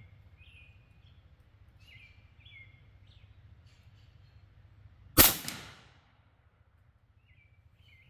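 A single shot from a Western Rattler .357 big-bore PCP air rifle, a sharp crack about five seconds in that dies away within about half a second. The rifle is firing a 68-grain FX Hybrid slug, clocked at 1,054 fps, at a power setting that is not turned up all the way. Birds chirp faintly throughout.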